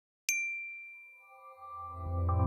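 A single bright electronic chime strikes about a third of a second in and rings away slowly. Soft sustained tones and a low swell build near the end as intro music begins.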